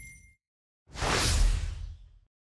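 A whoosh sound effect with a low rumble underneath, rising about a second in, then fading away; just before it the intro music dies out into silence.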